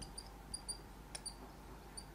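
Felt-tip marker squeaking faintly on a whiteboard as it writes: several short, high-pitched chirps, with one light tap of the marker about halfway through.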